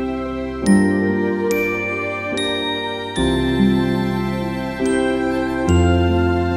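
Instrumental lullaby: a slow melody of bell-like struck notes that ring out and fade, one about every second, over soft sustained low chords.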